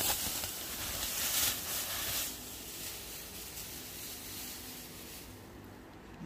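Thin clear plastic bag crinkling and rustling as a folded blanket is pulled out of it. The sound is busiest in the first two seconds or so and then fades away.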